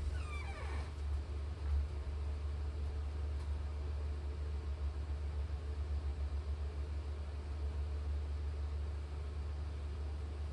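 A steady low hum fills an empty room, with a brief falling squeak about half a second in.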